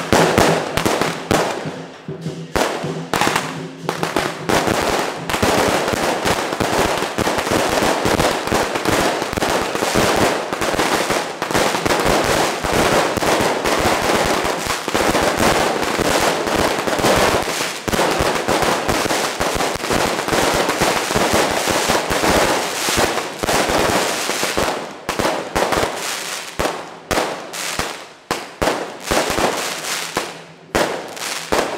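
A long string of firecrackers going off in a rapid, continuous crackle that thins to scattered separate bangs in the last few seconds.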